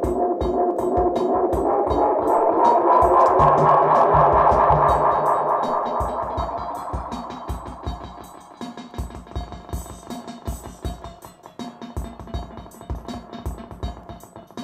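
Korg KR-55 drum machine pattern played through a Roland RE-201 Space Echo tape echo. As the echo knobs are turned, the repeats build into a swelling feedback tone that glides up in pitch, peaks about four seconds in, then dies away over the next few seconds, leaving the drum pattern with its tape echoes.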